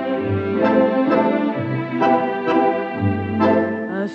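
Instrumental introduction of a 1950s popular song played from a 78 rpm shellac record. Sustained organ-like chords in slow waltz time, with a bass note on each bar about every second and a half, lead in just before the singer enters.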